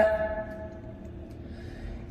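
A pause in a man's melodic Quran recitation: the last held note dies away with an echo over about the first second. Then only a faint low rumble of the car cabin is left, until the voice returns right at the end.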